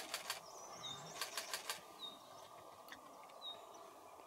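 Faint calls of small birds: a short, high, slightly falling note repeated about every second and a half, a brief high twitter half a second in, and a few quick sharp ticks near the start and about a second in, over a steady outdoor background hiss.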